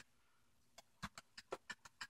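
Faint, quick clicks from an RC tank's drive sprocket being worked by hand on its gearbox shaft, a tight fit that is slowly coming loose. The clicks begin about a second in, after a near-silent start.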